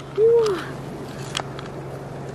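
A short hummed 'ooh' from a person's voice, its pitch rising then falling, near the start, then a single faint wet click as fingers work in the mussel's flesh, over a steady low background hum.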